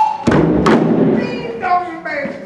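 Several djembe drums struck together: a deep bass stroke about a quarter second in, then a sharp slap, with a voice calling at the start and near the end.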